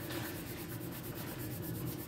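Red colored pencil shading on bullet journal paper: a steady scratchy rasp of fast, even back-and-forth strokes.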